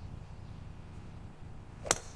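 Soundtrack of an AI-generated golf video playing back: faint low background noise, then a single sharp click near the end.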